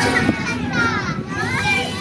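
Children's high voices talking and calling out, with swooping pitch, while the backing music drops out for a moment.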